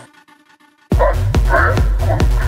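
Techno: a quiet break about a second long, then the kick drum and bass drop back in, driving at a little over two kicks a second, with short mid-range stabs over the beat.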